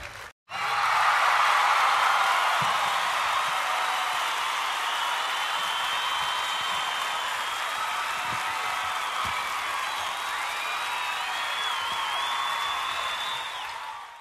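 A group of children cheering, whooping and screaming together, with high shrill squeals over the crowd noise, starting after a brief silence at the beginning and cutting off suddenly at the end.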